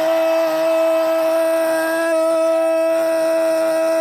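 A single long note held at one steady pitch with a stack of overtones, sounding without a break.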